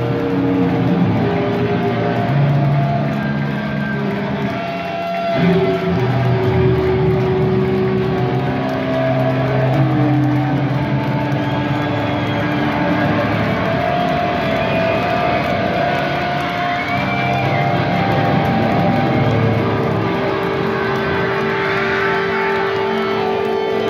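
Electric guitars left droning and feeding back through Orange valve amp stacks as the closing song of the set rings out, with no drumbeat. The held tones change pitch every few seconds, with thin whistling feedback glides near the middle.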